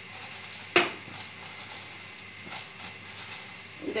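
Idli pieces sizzling in hot oil in a kadhai while being tossed with spice masala, with one sharp clack about a second in and a few lighter knocks.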